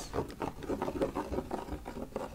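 Long acrylic fingernails scratching and tapping over the raised embroidered lettering of a canvas tote bag: a quick, irregular run of small scratchy strokes.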